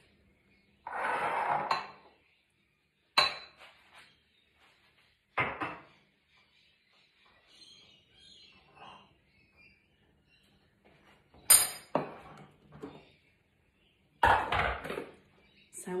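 Kitchen utensil clatter: a metal spoon scraping in a fine-mesh sieve over a glass bowl about a second in, then separate sharp clinks and knocks of metal and glass being set down, with quiet gaps between. A longer rattle near the end as the Thermomix's stainless steel mixing bowl is handled and lifted out.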